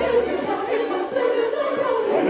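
Large opera chorus singing together, with the orchestra under it.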